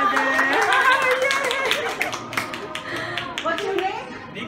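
A few people clapping, uneven handclaps several a second, over overlapping voices.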